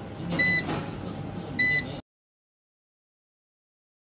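Two short, high electronic key beeps, a little over a second apart, from the touch buttons on a SAKO Sunpolo 8 kW solar inverter's control panel, each confirming a button press while setting 28 is being changed. About halfway through, the sound cuts off completely.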